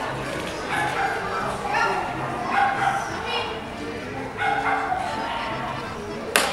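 A dog barking repeatedly, about five barks roughly a second apart, mixed with a voice.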